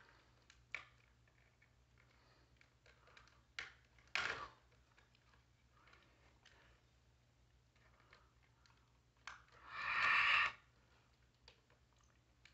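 Faint scattered clicks and small scrapes of a plastic smoke alarm being pried at with a screwdriver as it is worked off its ceiling mounting base, with a short louder noise about four seconds in and a louder, second-long noise around ten seconds.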